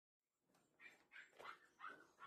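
Near silence: room tone with about four faint, short sounds in the second half.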